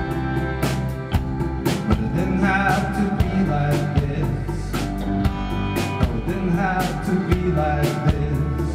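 Live band playing a slow song: accordion and guitars over a drum kit keeping a steady beat.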